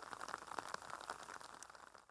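Faint patter of light rain on foliage: many small, irregular ticks over a soft hiss.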